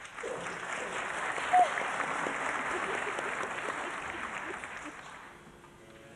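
Theatre audience applauding an opera aria that has just ended. The clapping sets in at once, holds steady, then dies away over the last couple of seconds. One short, loud call stands out about one and a half seconds in.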